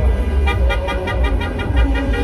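Car horns honking in rapid short beeps, about five or six a second, over a steady low rumble of traffic.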